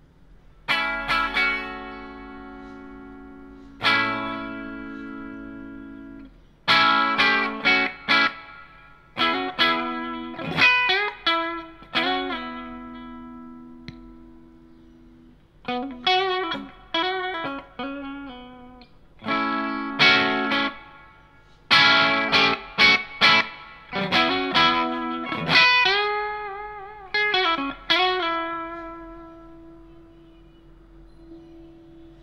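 Electric guitar played through a Kernom Ridge overdrive pedal into a mic'd Laney L5 Studio valve amp: overdriven chords and short single-note phrases, each left to ring out and decay between brief pauses. Near the end, held notes are shaken with vibrato.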